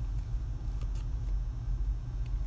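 A steady low rumble, with a few faint clicks from a lure package being worked open by hand.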